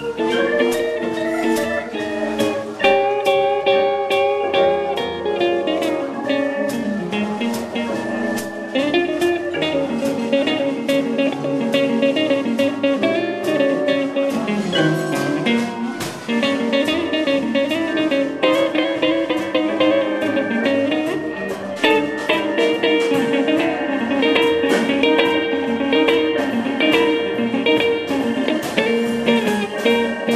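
Live blues-style instrumental music with a steady beat and a guitar-like lead line from the keyboard or backing track, while the saxophone mostly rests.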